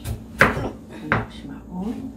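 Kitchen knife slicing through a raw peeled potato and knocking on a plastic cutting board: three sharp knocks, one at the start, one about half a second in and one about a second in.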